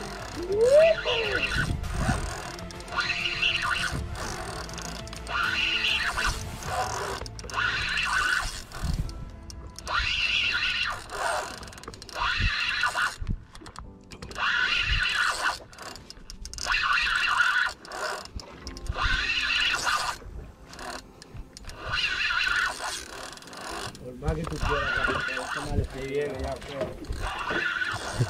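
Background music with a high singing voice in short repeated phrases, about one every two seconds.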